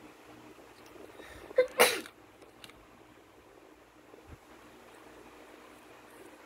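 A person sneezes once, loud and sudden, nearly two seconds in.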